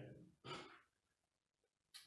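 The end of a man's word fading out, then one short breath out, like a sigh, about half a second in, followed by near silence.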